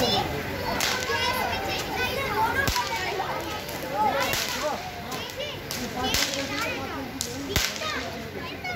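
Handheld aerial fireworks fired from sticks, going off in sharp cracks every second or two, over the constant excited chatter and shouting of a group of children.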